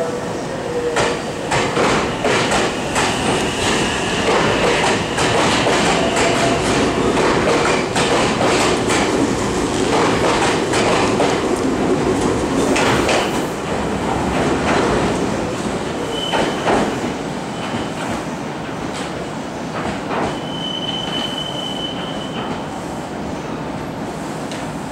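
Meitetsu 3300 series electric train pulling away and running past: the traction motors whine, with changing pitch as it speeds up, and the wheels click over the rail joints. The sound fades after the middle, with two brief high squeals in the last third as the train draws off.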